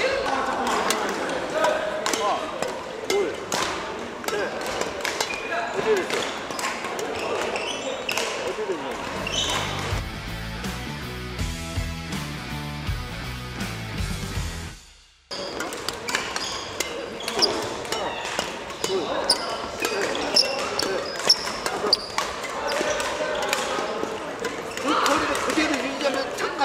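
Badminton rackets striking shuttlecocks on several courts of a busy, echoing sports hall: many short sharp hits at irregular intervals. For several seconds in the middle, music with a low beat plays over it and cuts off suddenly.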